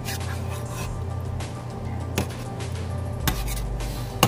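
Metal ladle stirring chicken curry in a stainless-steel pot, scraping through the sauce and knocking against the pot's side a few times.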